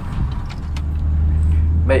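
Inside a Proton Waja's cabin: continuous low engine and road rumble, with a steady low hum that swells from about half a second in as the car gets going, and a few light clicks.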